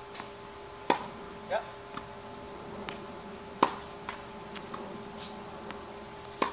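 Tennis ball struck by a racket on groundstrokes: two sharp pops about three seconds apart, the second the loudest, with fainter knocks between and after. Hits that the coach keeps praising for their sound.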